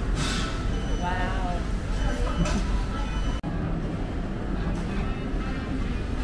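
Indistinct voices talking in a busy restaurant over a steady low rumble of room noise. There is a brief sudden dropout about three and a half seconds in, after which the background changes.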